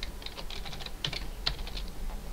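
Computer keyboard being typed on: a quick, uneven run of keystroke clicks.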